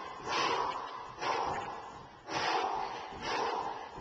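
A man breathing hard from the exertion of jump training: a forceful, noisy breath about once a second, four in all.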